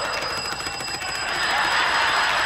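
A high electronic ring, pulsing rapidly like an alarm bell, starts suddenly and keeps ringing: the signal from the game's red desk button being hit. A steady haze of audience noise lies behind it.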